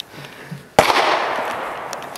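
A single gunshot about three-quarters of a second in, its report echoing and fading over the following second.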